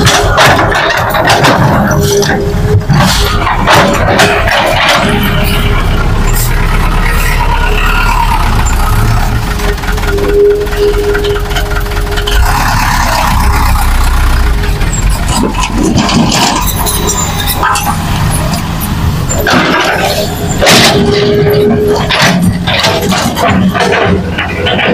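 Hitachi hydraulic excavator and dump truck diesel engines running, a low rumble with a steady whine that comes and goes. Scattered knocks and clatter come from soil and rock being loaded into the truck bed.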